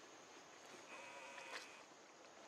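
A young macaque's call: one faint, steady-pitched call lasting about a second, starting near the middle, over a steady high insect drone.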